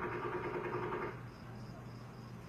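A burst of rapid, distant automatic gunfire that stops about a second in, leaving a quieter low background.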